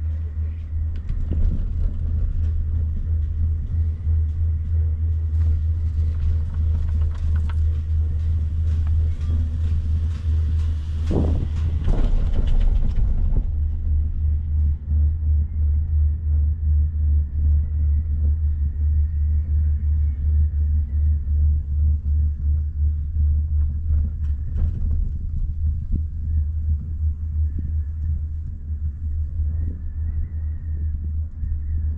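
Steady, fluttering low rumble on an open chairlift ride, typical of wind buffeting the microphone as the chair climbs. A brighter hiss swells over the first part and stops suddenly before halfway.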